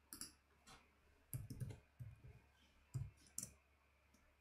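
Faint, uneven clicks of computer keyboard keys as a short name is typed, about a dozen strokes in small groups.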